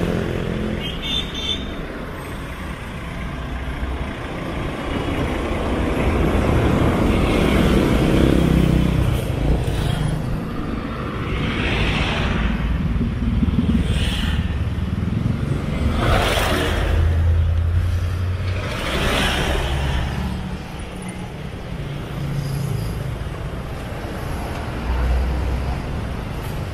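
Street traffic passing close by: motorcycles and other motor vehicles going past one after another, each one swelling and fading over a steady engine and road noise.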